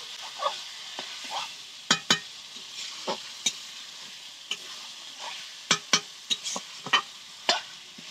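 Chicken and potato pieces sizzling in oil in a steel kadai, with a metal spatula stirring them and knocking and scraping against the pan from time to time.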